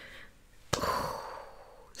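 A woman sighs: one breathy exhale that starts suddenly a little after a third of the way in and fades away over about a second.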